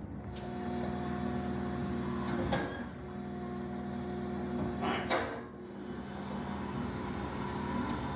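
A vehicle engine running at a steady pitch, played from a television's speakers and picked up in the room, with two brief sharp noises partway through.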